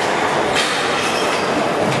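Squash rally: the ball is struck sharply about half a second in and again near the end, with squeaks of shoes on the wooden court floor, over a steady loud din of the hall.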